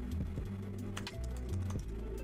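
Computer keyboard typing: a few scattered key clicks over soft background music with a low sustained bass.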